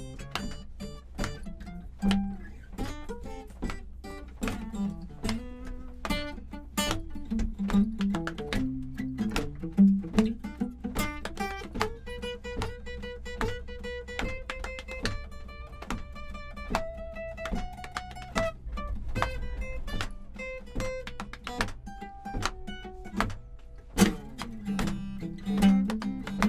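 Acoustic guitar playing an instrumental break in a song: quick picked notes, with some notes held and slid in pitch in the middle of the passage. A steady low hum runs underneath.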